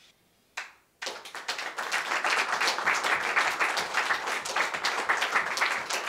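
Audience applauding: dense, irregular clapping that starts about a second in, after a short swish in otherwise near silence.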